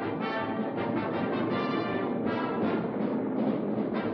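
Orchestral cartoon score with brass and timpani playing.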